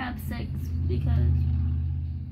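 A low, steady engine-like rumble, as of a motor vehicle going by, swelling about a second in and easing off near the end. A short vocal sound comes at the very start.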